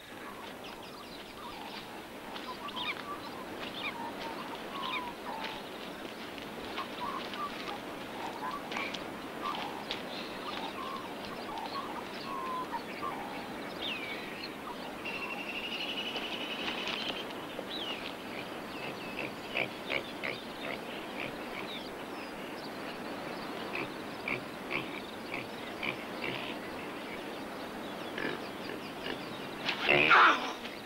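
Birds calling in bushland: scattered short chirps and whistles over a steady background hiss, with one trilled call lasting about two seconds near the middle. A sudden loud burst of noise comes right at the end.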